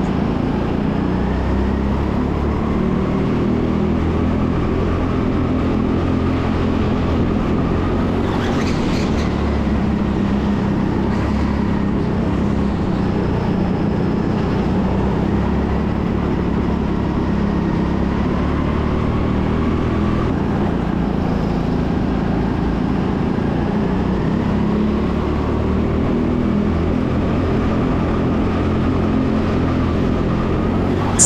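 Rental go-kart engine running at racing pace, heard from the driver's seat, its pitch rising and falling gently with the revs through the corners.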